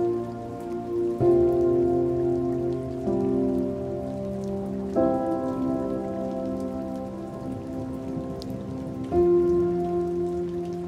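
Slow, sustained music chords that shift to a new chord every couple of seconds, laid over a steady patter of rain.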